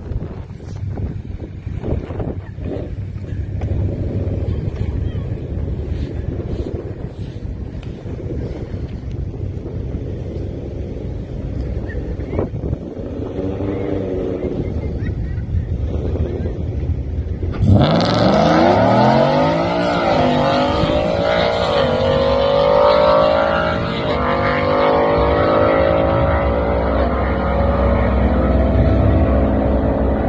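Ford F-150's 5.0 V8 idling at the drag strip starting line, then launching hard just past halfway with a sudden loud jump in engine sound. The revs climb and drop in quick steps as the 10-speed automatic shifts up fast, and the engine keeps pulling to the end.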